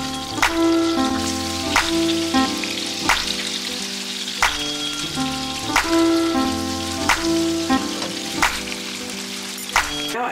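Salmon fillets sizzling in a frying pan, a steady hiss throughout, under background music with held chords and a beat about every second and a half.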